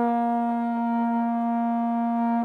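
Solo trombone holding one long, steady note, the closing note of a tune, recorded on an iPhone.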